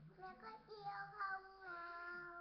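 A young girl singing, holding long, drawn-out notes.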